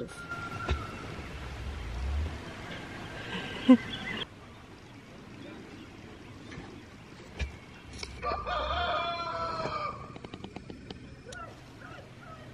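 Blue slate turkey tom calling while strutting in display, with a longer call of about two seconds near the end. A single sharp tap stands out a little before the middle.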